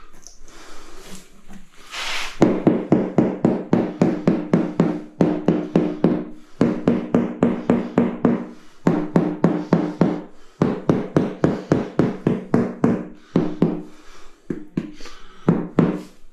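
Rubber mallet tapping a large-format tile down into its wet mortar bed, in quick runs of about four knocks a second with short breaks between runs. Each knock carries a short, low ringing tone.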